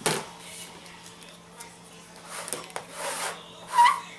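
Tabletop handling: a paper coffee filter rustling as a soft rubber insert is worked into a plastic bucket lid. A sharp click at the start, several short rustles, and a brief squeak near the end.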